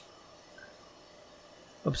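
Quiet room tone with one faint, brief blip about half a second in: a button press switching off a bench electronic load. A man starts speaking near the end.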